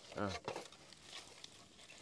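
A short spoken syllable near the start, then faint rustling and crackling of dry leaf litter and debris as it is handled.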